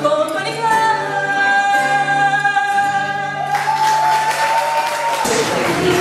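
Fado sung by a woman over guitar accompaniment, the voice holding one long high note to close the song. The guitars and the note stop about five seconds in, while a rough wash of noise rises from a little past the middle.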